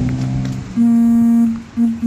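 A motorcycle engine idling, fading out in the first moment. Then a loud, steady single-pitched tone starts abruptly, is held for under a second, and comes back as two short toots.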